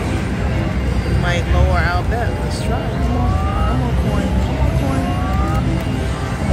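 Video slot machine spinning its reels, its electronic tones gliding upward several times, over the steady low din of a casino floor.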